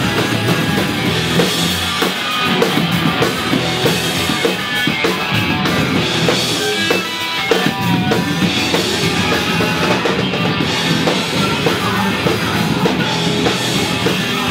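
Hardcore punk band playing live: electric guitar and drum kit in a loud, dense, unbroken passage.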